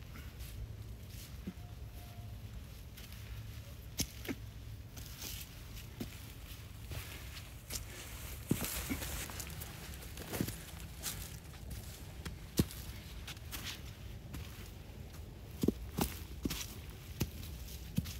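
Hiking-boot footsteps climbing over limestone rocks and dry leaves, an irregular run of scuffs and knocks that grows louder in the middle and near the end as the walker passes close by.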